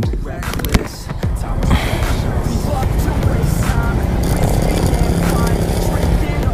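Motor scooter's small single-cylinder engine idling while the bike stands still, a steady low rumble with a fast even pulse, after a sharp click in the first second.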